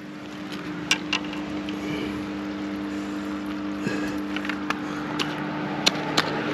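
An engine running steadily at an even pitch, with a few light clicks.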